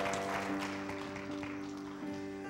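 Worship band holding a soft sustained chord as the lead-in to a song, slowly fading. Scattered clapping from the congregation dies away in the first second or so.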